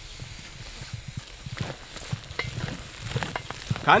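Wooden stick stirring and working thick cassava dough (ubugari) in a metal pot on a gas burner: irregular soft knocks and scrapes over a faint steady hiss.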